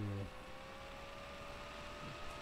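A brief low voice sound at the very start, then a faint steady electrical hum with a thin whining tone that creeps slightly up in pitch, over background hiss.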